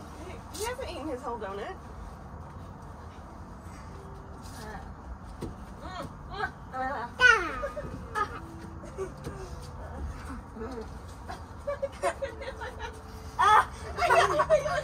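Young children's voices come and go, with a loud, high squeal about halfway through and short vocal sounds near the end.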